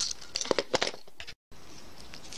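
Small clicks and crunches as pliers squeeze a metal clasp end tight onto the cut end of a fabric zipper, bunched in the first second. A brief cut to dead silence follows, then only faint room hiss.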